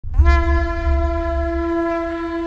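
A single long, steady horn-like note that slides up into pitch at the start and then holds, over a deep low rumble: the opening note of a film score.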